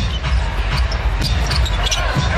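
Live basketball game court sound: steady arena background noise with a few sharp knocks of the ball bouncing on the hardwood floor.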